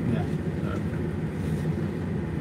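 Steady low rumble of a passenger train carriage heard from inside, with faint voices.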